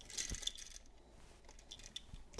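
Faint handling noise of a plastic occupancy-sensor wall switch being turned over in the hand: light rustling, with a couple of small clicks, the sharpest one near the end.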